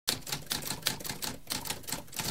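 Typewriter keys typing: a quick, even run of key strikes, about six a second.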